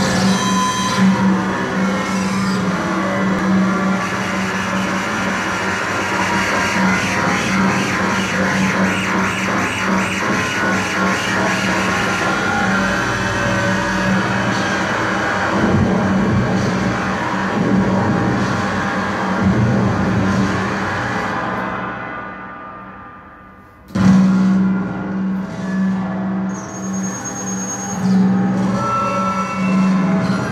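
Live electronic music played on a pad sampler and effects pedals: a dense, continuous texture over a steady low hum. About three-quarters of the way through it fades right down, then cuts back in suddenly.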